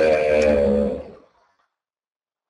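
A man's voice holding one long, steady hesitation sound, a drawn-out 'uhh', for about a second, then cutting off into dead silence.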